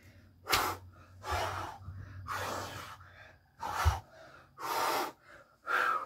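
A man breathing hard from exertion in the middle of a high-rep bodyweight workout: about six heavy, noisy gasps and exhales, one every second or so. A dull thump comes just before four seconds in.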